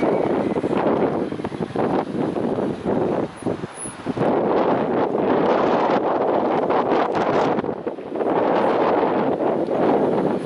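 Wind buffeting the camera's microphone in loud, gusty rumbles, easing briefly twice, about three to four seconds in and again near the end.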